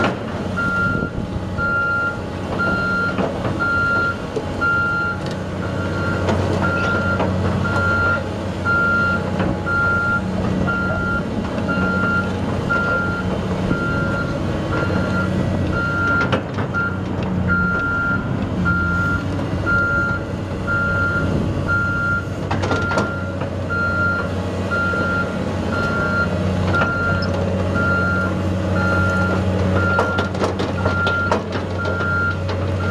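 Caterpillar 3066 six-cylinder diesel engine of a Caterpillar 320L excavator running steadily while a travel alarm beeps at an even pace as the machine moves. A few sharp knocks come in around the middle.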